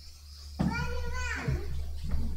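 A young child's voice calls out once, a drawn-out sound of about a second that starts about half a second in, with other voices murmuring after it.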